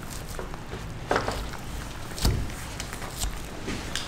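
Fish cleaning on a stainless steel table: a few separate knocks and clicks from a knife and gloved hands handling a lingcod carcass, over a low steady background hum.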